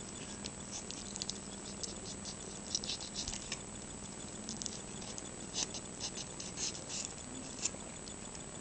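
A knife cutting and scraping raw chicken meat away from the thigh bone, making irregular small wet clicks and crackles.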